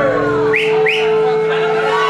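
Two quick rising whistles over crowd chatter, with a steady held note sounding underneath.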